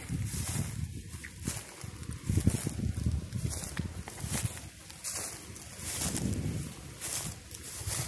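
Footsteps crunching through dry leaf litter and grass, a step about every half second to a second, with a low rumble under them.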